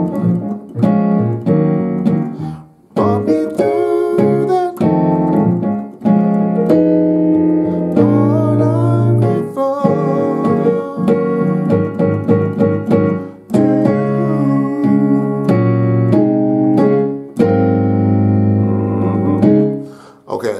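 Digital piano playing a slow gospel chord progression in two hands: full, thick chords with power-chord voicings in the left hand, each struck and held, changing every second or two.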